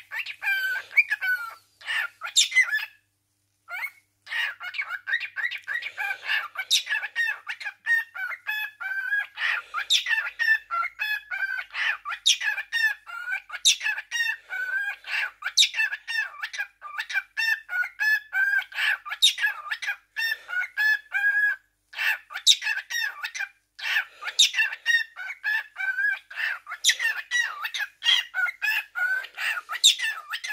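Cockatiel calling almost nonstop in rapid strings of short, chattering calls, with a short pause a few seconds in and another brief one about two-thirds of the way through.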